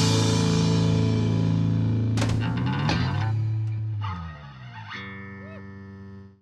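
A live three-piece rock band of electric guitar, bass and drums ends a song. Held chords ring with a couple of cymbal hits two to three seconds in, then fade. A last sustained guitar note rings out near the end.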